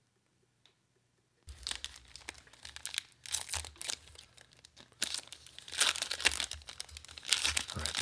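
Magic: The Gathering draft booster pack's foil wrapper being torn open and crinkled by hand: irregular ripping and crackling, starting about a second and a half in.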